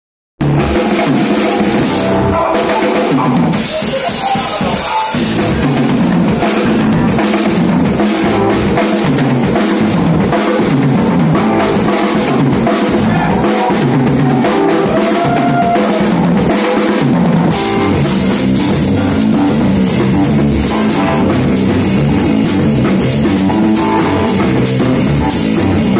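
Live rock band playing, with the drum kit loudest, its bass drum and snare keeping a steady beat.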